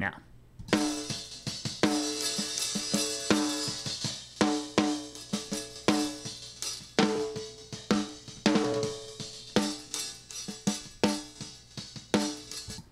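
Snare-top microphone track of a multitrack drum recording, played through the Brainworx bx_console expander/gate with only the threshold set and the hysteresis off. Snare hits follow one another in a steady groove, each with a short ring. The threshold is set high and the gate releases quickly, so each hit's tail is cut short.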